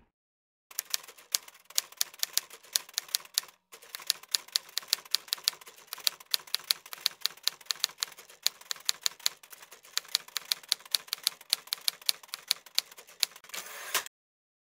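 Typewriter sound effect: rapid keystroke clacks, several a second, with a brief break about three and a half seconds in, keeping pace with text being typed out.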